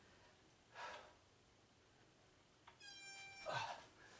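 A man's heavy exhale about a second in, straining through chair dips. Near three seconds, a short steady electronic beep, the interval timer marking the end of the work period, followed by another strained breath as he comes up out of the dip.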